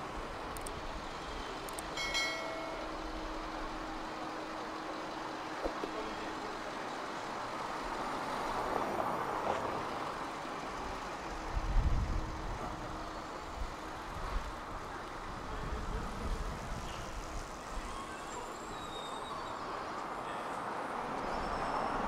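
Steady city street traffic hum, with a short high-pitched squeal about two seconds in and a brief low rumble a little past halfway.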